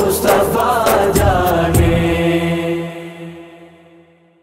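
A male voice sings the closing line of an Urdu naat over a steady backing drone and sharp percussive beats. The singing ends about two seconds in, and the held backing tones fade away.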